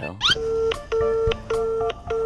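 Phone calling tone: a run of short, even electronic beeps, four in a row, each under half a second and repeating about every 0.6 seconds, as an outgoing call connects.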